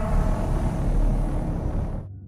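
Deep rumble with a hiss over it, a horror-film sound effect from the movie's soundtrack, easing off near the end.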